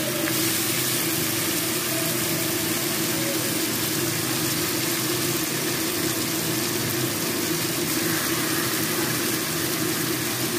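Chicken and sliced onions frying in an aluminium kadai over a gas burner: a steady sizzle with a low steady hum underneath.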